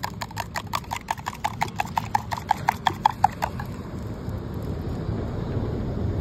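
Eggs being beaten by hand in a steel tumbler, the beater clinking rapidly against the ringing metal at about six strokes a second. The beating stops about three and a half seconds in.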